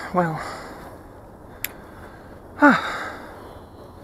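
A man's voice with two short, separate remarks ("well", then "huh"), with a quiet pause between them broken by a single sharp click. No engine is running.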